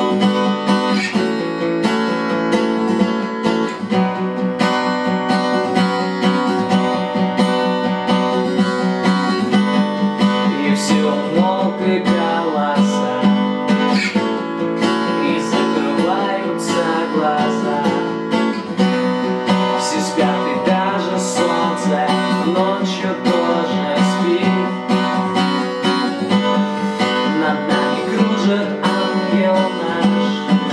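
Steel-string acoustic guitar with a capo, strummed in a steady chord pattern; a man's voice joins in singing partway through.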